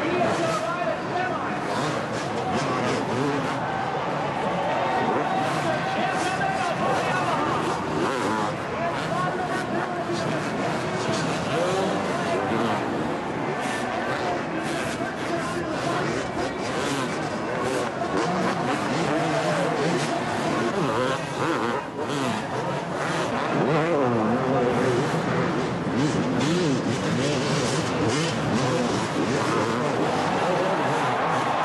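Several two-stroke motocross bikes racing, their engines revving up and down, many pitches overlapping as the riders work the throttle through jumps and turns.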